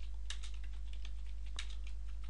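Computer keyboard typing: a quiet, irregular run of key clicks as a line of text is typed, over a steady low hum.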